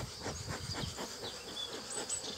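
Insects buzzing steadily over an open beehive: honeybees on the exposed frames, with a continuous high, fine trill like crickets in the grass and a few short high chirps.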